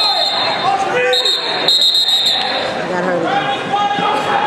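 Referee's whistle, three high blasts in the first half: the last is the longest. Voices of the gym crowd run underneath. The match is being stopped at its end.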